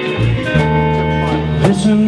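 Live slow blues with strummed acoustic guitar and electric guitars, held low notes underneath, played between vocal lines.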